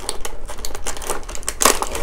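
Thin clear plastic packaging crinkling as hands pull it apart: a quick, irregular run of small crackles, with one louder crackle late on.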